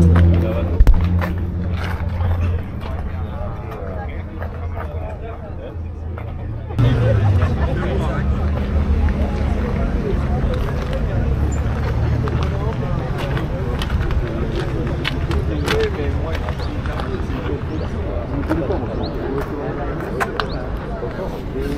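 Background chatter of people talking outdoors over a steady low rumble. About seven seconds in, the sound jumps abruptly louder.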